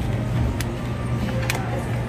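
A clear plastic tub being handled and labelled, giving two light clicks over a steady low hum of store machinery.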